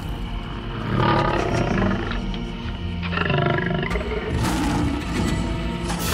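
Lion roars as cartoon sound effects, two of them, about a second in and about three seconds in, over background music.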